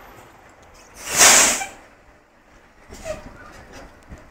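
A short, loud hiss of compressed air let out of a city bus's air system, swelling and dying away within under a second, about a second in. A few faint knocks follow near the end.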